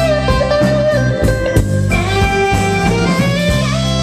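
Live blues band playing an instrumental passage: electric guitar with bending notes over bass and drums, with saxophone in the mix.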